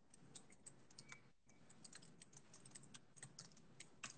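Faint typing and clicking on a computer keyboard, an irregular run of light key clicks, over a low steady hum.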